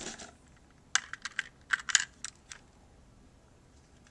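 Batteries and a small plastic device being handled as the batteries are fitted into its battery compartment: a quick run of light, sharp clicks and taps in the first two and a half seconds, then quiet.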